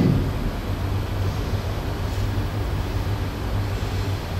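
A steady low hum with a faint even hiss over it, unchanging throughout.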